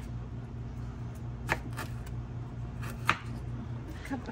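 A kitchen knife cutting fresh ginger root on a wooden cutting board: a few separate sharp knocks, two close together about a second and a half in and another near three seconds, over a steady low hum.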